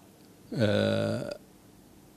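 A man's voice holding a drawn-out hesitation sound, a single 'eeh' of under a second between phrases, its pitch dropping at first and then holding steady.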